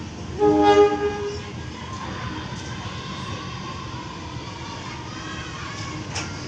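Diesel locomotive horn sounding once for about a second, about half a second in, as the train approaches. The train's running sound follows, steadier and quieter.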